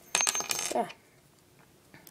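Metal wire puzzle pieces clinking and jingling together in the hands: a quick cluster of metallic clicks with a thin high ring, lasting about half a second.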